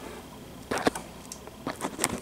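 Handling noise: a few short light clicks and taps, two sharper ones about three quarters of a second in and several fainter ones near the end, over quiet room tone.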